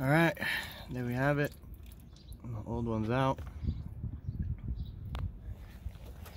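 A man's voice in three short vocal sounds over the first half, not caught as words, with a single sharp click about five seconds in.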